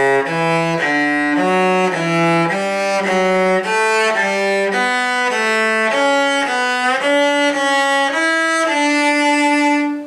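Cello bowed through a D major scale in broken thirds, about two notes a second, stepping alternately up and down. It ends on a long held note.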